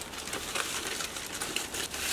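Thin white packaging wrap rustling and crinkling as it is pulled off a new handbag by hand.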